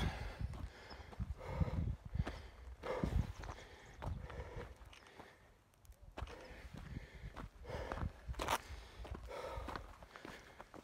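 Hiking footsteps on a loose gravel and dirt trail, going steadily with a brief lull about halfway through.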